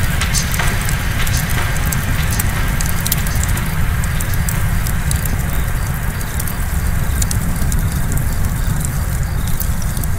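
Dark doomcore track in a beatless section: a steady, dense low rumble with scattered crackles over it.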